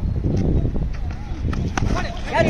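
Outdoor ground ambience: a steady low rumble with faint distant voices, and a couple of light clicks in the second half.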